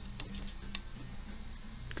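About three light clicks on a laptop, spread over two seconds, as a move is entered in an online Go game, over a low pulsing hum.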